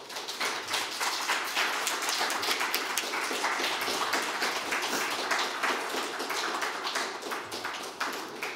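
Audience applauding: many hands clapping at once, sustained and steady, easing slightly near the end.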